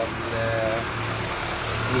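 A short murmur of voice about half a second in, over a steady low hum and street background noise.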